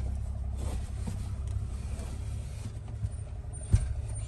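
Low steady rumble of an idling vehicle, and near the end one sharp knock as a wicker patio chair is loaded into the back of a minivan.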